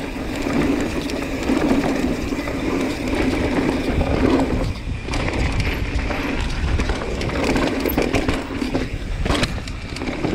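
Commencal Meta mountain bike rolling fast downhill over rock slab and loose dirt: a steady rumble of tyres on the trail, broken by many short clicks and knocks as the bike rattles over bumps.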